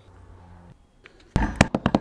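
A faint low hum, then about a second and a half in, a short clatter of several sharp clicks and knocks.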